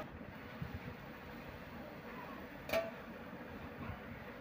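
A single short metal clink, about two-thirds of the way in, as a steel plate is set over a cooking pan as a lid, over a low steady background noise.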